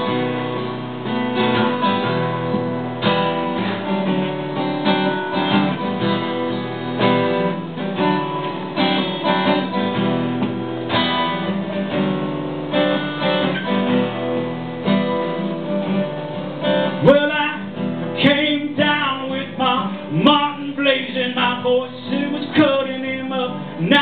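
Acoustic guitar strummed steadily in an instrumental break of a pop-rock song. A voice sings over it for the last several seconds.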